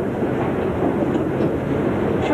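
A steady, even background noise with a faint low hum running under it, without change.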